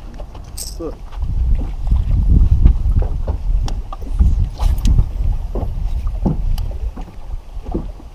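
Wind buffeting the microphone in uneven gusts, a low rumble that swells and fades, with a few short words and small clicks over it.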